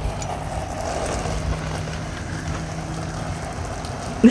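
Garden hose spraying a jet of water, a steady hiss of spray, over a faint low steady hum.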